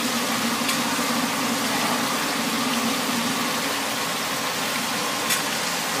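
Hot oil sizzling steadily in a large iron wok as battered pieces deep-fry, with a metal skimmer stirring them and clinking faintly against the wok twice. A steady low hum runs underneath.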